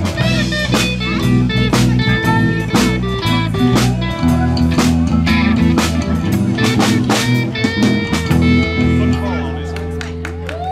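Live rock band playing: guitar, bass guitar and drum kit, with steady drum hits under the chords. Near the end the drums stop and a final chord is left ringing.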